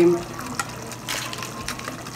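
Thick meat sauce being spooned and spread over lasagna layers in a glass baking dish: soft wet sounds with a few light clicks, a little louder just after a second in.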